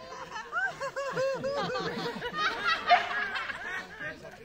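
Several people laughing together, overlapping runs of short 'ha-ha' bursts, with one sharp louder burst about three seconds in.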